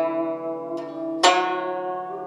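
Guzheng, the Chinese plucked zither, played solo. Its steel-wound strings are plucked and left to ring and fade, with a lighter pluck near the middle and a loud one a little over a second in.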